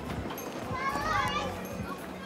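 Children playing and calling out over background chatter, with one child's high shout, bending up and down, about a second in.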